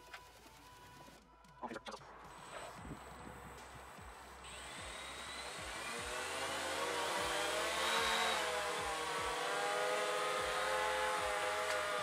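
DJI Phantom FC40 quadcopter's four brushless motors and propellers spinning up: a rising whine starting about four and a half seconds in, growing louder and settling into a steady whir of several tones.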